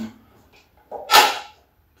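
A man's single brief cough about a second in.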